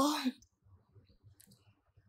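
The end of a woman's exclaimed "Oh", then near silence broken by a few faint, brief clicks.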